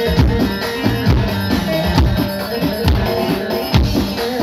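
Live Turkish folk dance music for a halay. A davul bass drum strikes heavy beats about once a second, with lighter strokes in between, under a steady held melody line.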